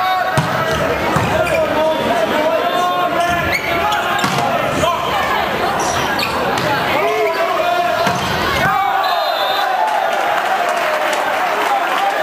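Men's volleyball point in a gymnasium: the ball bounced and struck during the serve and rally, under steady crowd and player voices shouting and chattering.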